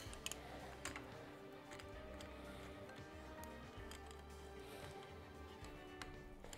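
Faint background music, with a few light metal clicks and taps as two coil spring compressors are set against the coils of a motorcycle shock spring.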